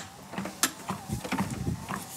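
Clicks and knocks from the folding treadmill's handlebar being lifted and swung up into place, with a few dull thumps in the middle. A faint steady motor whine runs underneath.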